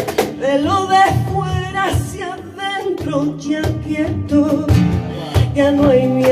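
Live flamenco music: a woman sings over a flamenco guitar, with a cajón keeping time and rhythmic hand-clapping (palmas) throughout.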